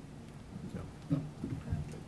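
Quiet speech, a brief 'so… okay', over room tone in a meeting room, with a soft low thump near the end.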